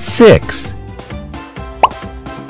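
Cartoon sound effects over children's background music: a loud, quick plop that falls in pitch just after the start, and a short rising blip near the end.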